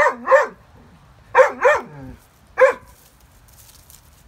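A dog barking in short yips: five quick calls, two pairs and then a single one.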